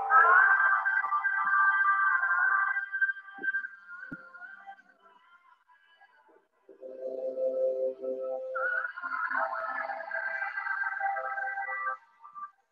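Slow background music with long held notes: a higher phrase, a pause of a couple of seconds near the middle, then a lower phrase followed by a higher one again.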